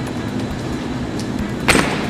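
Steady low hum of a store's refrigerated cases, with one short sharp noise near the end as a glass cooler door is opened and a plastic tub is taken from the shelf.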